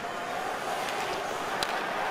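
Steady background murmur of an ice-hockey arena crowd heard through the TV broadcast, with a few faint clicks.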